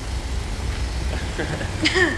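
A steady low rumble, with soft laughter and a short voiced sound near the end.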